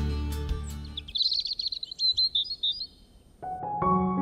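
Background guitar music fades out. It is followed by a quick run of high bird chirps lasting under two seconds, then soft piano music begins near the end.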